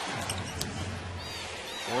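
Basketball arena crowd noise during play, with a sharp click about half a second in and a few short high squeaks, typical of sneakers on the hardwood court, past the middle.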